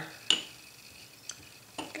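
A brush stirring PVA glue and water in a container: one sharp clink against the side about a third of a second in, then a couple of faint ticks.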